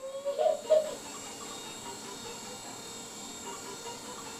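Faint, steady high-pitched whine and hiss of a small electric motor, the toy helicopter's rotor motor, with a brief louder sound about half a second in.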